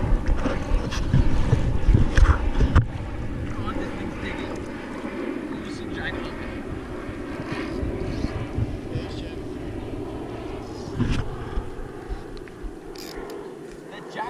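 Wind gusting on the microphone, heaviest in the first three seconds and then settling to a steadier rush, with faint, indistinct voices and a single sharp knock about three seconds in.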